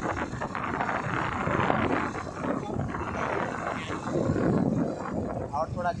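Wind buffeting the phone's microphone on a moving scooter, a loud, rough, fluctuating rush mixed with road and engine noise. A man's voice starts near the end.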